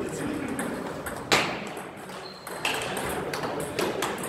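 Table tennis rally: a few sharp clicks of the ball off rackets and bouncing on a Stiga table, the loudest just over a second in.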